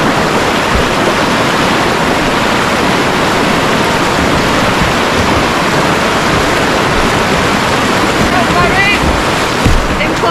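Loud, steady rush of river whitewater as a kayak runs through a rocky rapid. A short call from a voice comes near the end.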